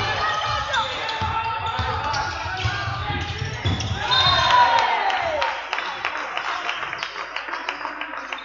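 Basketball game on a hardwood gym floor: a ball dribbling, sneakers squeaking in sharp glides, loudest about four seconds in, and the patter of players running, with voices calling over it.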